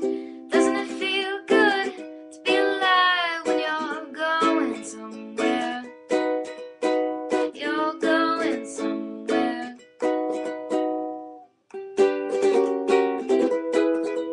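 Ukulele strummed in chords with a voice singing over it. The strumming fades to a brief pause about eleven seconds in, then picks up again.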